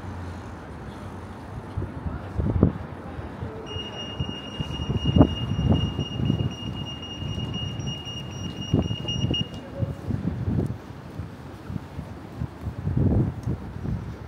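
Night-time city street: passing traffic rumble with irregular low thumps from wind buffeting the microphone. From about four seconds in, a steady high-pitched electronic tone holds for about six seconds, then stops.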